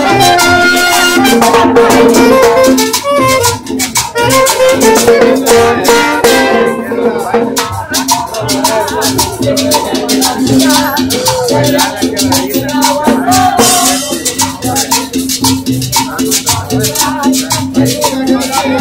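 Live cumbia band playing dance music: saxophones holding melody lines over drums and cymbals, with a steady rattling percussion rhythm.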